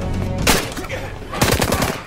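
Rifle gunfire on a film soundtrack: a loud shot about half a second in, then a rapid burst of shots near the end, over the film's score.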